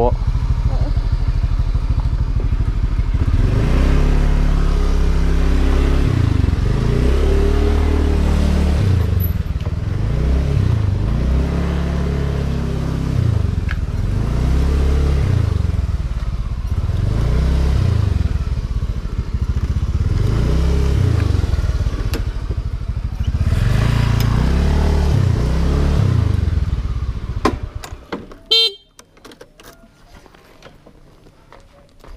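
Two-stroke motorcycle engine ridden slowly, its revs rising and falling over and over, about once every two seconds. The engine cuts off near the end, followed by a few clicks.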